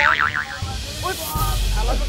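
A cartoon 'boing' sound effect: a wobbling tone that dies away within the first half second, over background music.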